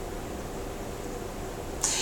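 Steady background hiss of a small room, with no clear event in it; a brief soft noise comes near the end.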